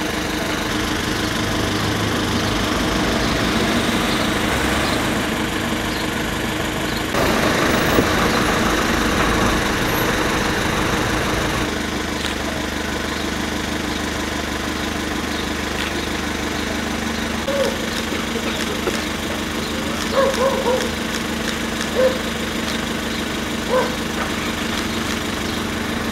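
An engine running steadily at idle. Its sound shifts about seven seconds in and again about twelve seconds in, and a few short, faint sounds come through in the second half.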